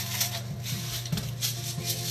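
Hand-twisted salt grinder cranked over a pan, a rapid run of gritty clicks about five a second.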